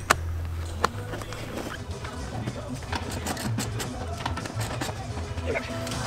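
Plastic seat-rail trim cover being pressed back into place under a car seat: two sharp clicks about a second apart, then small knocks and rustling as the installer moves about. Music plays in the background.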